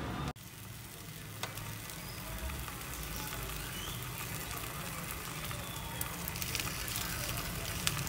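Bacon slices sizzling in a frying pan on the stove: a steady hiss with scattered light crackles, more of them late on.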